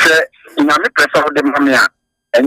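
Speech only: a person's voice speaking in several quick phrases.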